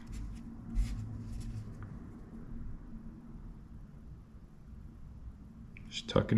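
Faint handling noise from hands moving and gripping a soft plastic swimbait on a paper towel: a few light taps and rustles in the first second and a half, then only low rustling.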